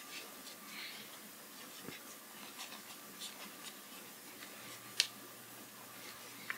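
Faint rustling and crinkling of paper towel as hands squeeze and press a warm piece of Worbla thermoplastic wrapped in it, with one sharp click about five seconds in.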